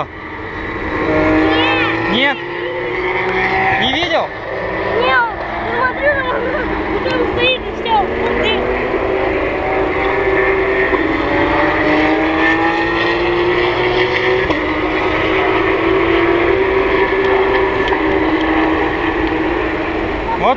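Porsche Carrera Cup race cars running in qualifying, several flat-six engines overlapping, their notes slowly rising and falling as the cars accelerate and brake around the circuit.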